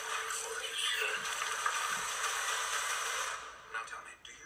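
Action film trailer soundtrack played through a small device speaker, thin with no bass: a steady hissing sound effect under voices and music, falling away a little over three seconds in.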